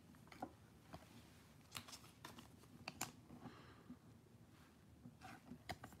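Near silence, with faint scattered clicks and light rustles of baseball cards being handled and flipped through in the hand.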